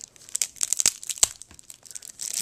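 Clear plastic wrapping on a deck of trading cards crinkling and crackling as it is torn open and pulled off by hand, with a few sharp snaps, the loudest about a second and a quarter in.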